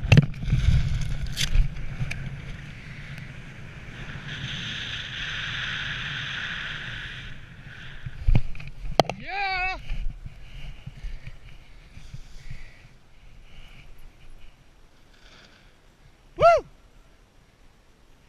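Wind rushing loudly over a head-mounted camera's microphone during a BASE jump's freefall and canopy flight, easing off after a few seconds. About eight seconds in comes a sharp thud as the jumper lands in snow, followed by a wavering whooping yell, and near the end one short, loud whoop.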